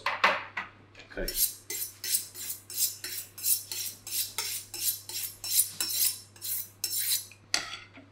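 Chef's knife being honed on a steel: a quick, regular run of metallic scraping strokes, about four a second, starting after about a second and stopping near the end.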